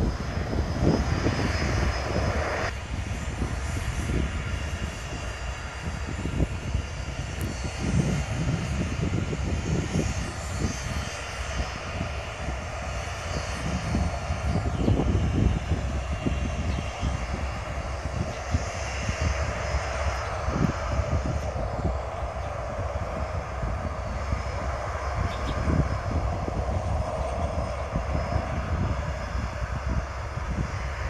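The four turbofan engines of a BAe 146-200 airliner running steadily, heard from beside the runway. The high hiss drops away suddenly about three seconds in.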